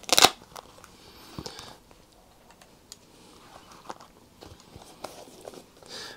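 A Velcro fastening on a spectacle case ripping once, sharply and briefly, at the very start. Soft clicks and rustles follow as the spectacles and cases are handled.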